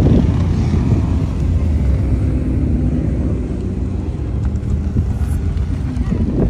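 Sports car engine and exhaust rumbling low and steady as the car pulls slowly away.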